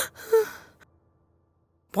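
A woman's short tearful whimper: one brief breathy cry that fades out within the first second.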